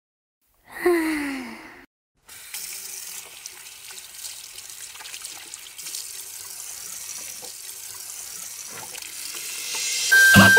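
A water tap running steadily into a bathroom sink, starting about two seconds in. Just before it, a brief sound that falls in pitch.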